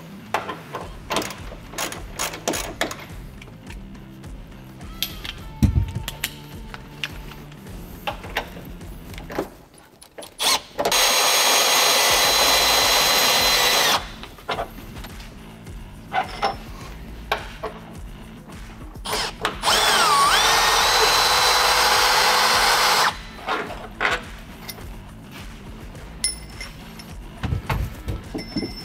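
A cordless power tool spins a socket on an extension to back out the canopy's 21 mm mounting bolts. It runs in two bursts of about three seconds each, one per bolt, with clicks and knocks from handling the tools before and between them.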